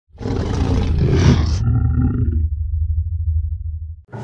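Opening sting sound effect: a loud, dense rush over a deep rumble for about a second and a half, a brief chord of steady tones, then a low drone that fades out near the end.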